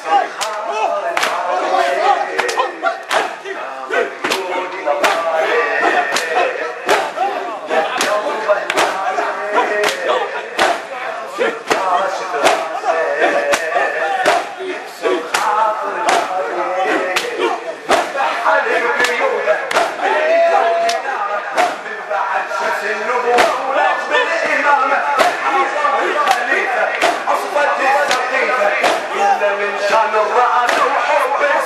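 A man's amplified voice leading a Shia mourning lament (latmiya), with a crowd of men chanting along and beating their chests in time: sharp, even slaps about three every two seconds.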